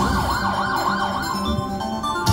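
Hot Hit Rainbow Riches slot machine playing its electronic reel-spin sound: a warbling tone that sweeps up and down about four times a second over steady notes. Near the end it changes to held notes as the reels slow.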